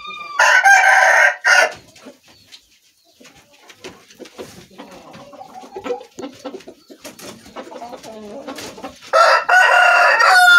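A rooster crowing loudly twice: one crow just after the start, and another beginning near the end. Softer scattered sounds fill the gap between the crows.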